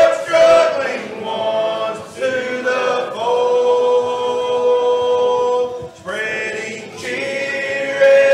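Men's voices singing a slow gospel song in harmony, with a long held chord in the middle and a brief breath break just after it.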